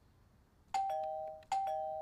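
Video intercom doorbell chiming twice: each ring is a two-note ding-dong, a higher note falling to a lower one, with the second ring following about three quarters of a second after the first.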